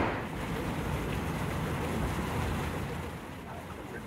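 Fountain jets splashing into a shallow pool: a steady hiss of falling water that drops lower about three seconds in.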